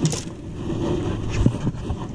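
Wind and water noise on a small open boat, with a sharp click at the start and a short knock about one and a half seconds in.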